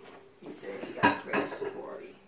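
A short clatter of sharp knocks and clinks of hard objects, the loudest about a second in and another just after.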